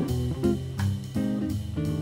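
Jazz guitar on a Gibson hollow-body archtop electric, playing chords that are struck every third of a second or so over a low bass line, in a swing style.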